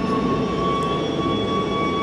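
A steady mechanical drone with a thin, unchanging whine in it.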